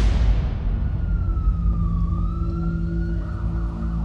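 Trailer sound design: a whoosh swells into a deep bass hit at the start and fades away. Under it runs a heavy low drone of music, with a thin wailing tone above that sinks and then rises again.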